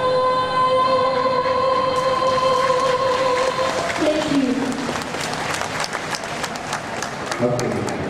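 A female singer holds the long final note of a ballad through a microphone and cuts off about four seconds in. The audience breaks into applause that swells after the note ends, and a man's voice starts speaking near the end.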